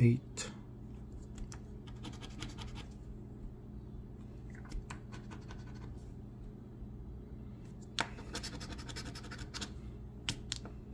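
Latex coating being scratched off a lottery scratch-off ticket in short scraping strokes: a flurry about two seconds in, a few scattered strokes, then a longer run near the end as a bingo caller's number is uncovered.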